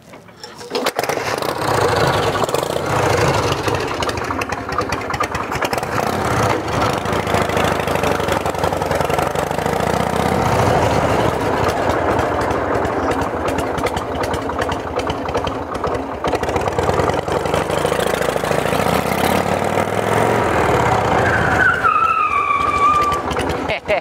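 A 1981 Harley-Davidson Shovelhead 80 cubic-inch V-twin is kickstarted and catches within the first second. It then runs on steadily as the chopper is ridden.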